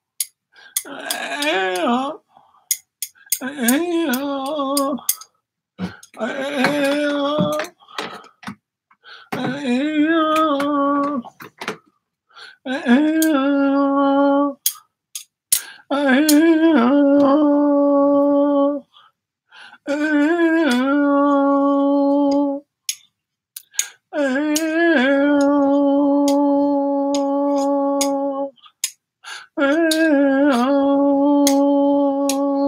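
A man's voice improvising wordless humming and sung tones into a close microphone, in phrases of a few seconds with short pauses between. The first phrases slide up and down in pitch; later ones are long held notes with a small scoop at the start, the last and longest near the end. Sharp clicks sound between and over the phrases.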